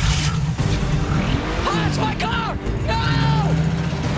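Old yellow Chevrolet Camaro's engine running steadily as the car pulls away, with several short tire squeals that rise and fall in pitch.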